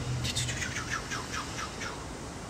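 A bird chirping: a run of about ten short, high notes, each falling in pitch, spacing out slightly toward the end.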